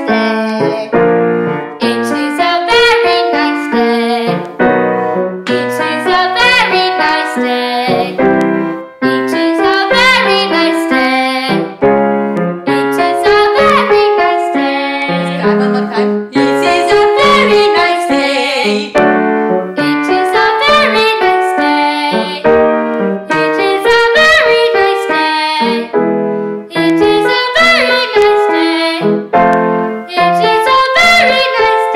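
Girl singing a vocal warm-up phrase, likely "it is a very nice day", to grand piano accompaniment. The short sung pattern is repeated over and over with brief breaks, each time over new piano chords.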